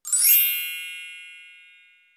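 A subscribe-button sound effect: one bright, bell-like ding that starts with the click and rings out, fading away over about two seconds.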